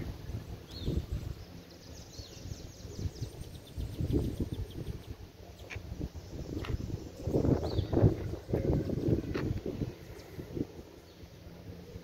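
Outdoor ambience: a low rumble on the microphone, a few faint high bird chirps, and scattered light knocks.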